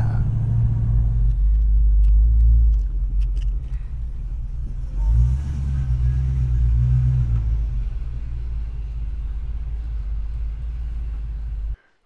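Rumble of a 1970 Dodge Coronet R/T's 440 Six Pack V8, an engine that is not running right. The note rises briefly about five seconds in, then cuts off suddenly near the end.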